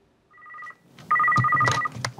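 Office desk telephone ringing with an electronic trill: a short, faint ring, then a longer, louder ring about a second in.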